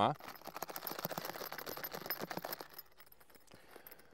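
Zipper pulls on a hard binocular case rattling as the case is shaken, a fast clatter for about two and a half seconds that then dies away. The pulls are not rubber-coated, which is why they rattle so much.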